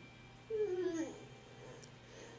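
A young child's voice, faint: one short whine that falls in pitch about half a second in, then a softer trailing sound.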